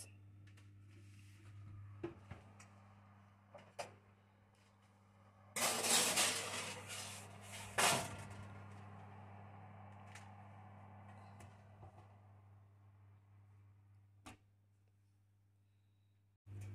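Metal baking tray being slid into an oven onto its wire rack: a loud scrape of about two seconds starting about five and a half seconds in, ending in a sharp knock, with a few lighter clicks before and after, over a low steady hum.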